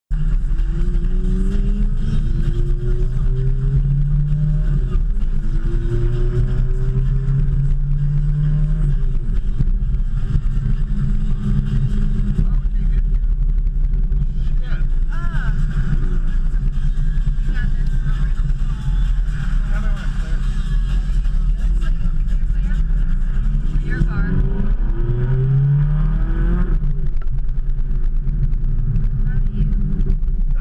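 Car engine heard from inside the cabin, its pitch rising several times as the car accelerates, over a steady low road rumble.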